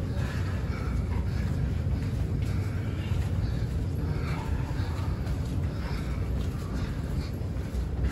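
Steady low rumble inside a concrete tunnel as people walk through it, with faint scattered footfalls and distant voices over it.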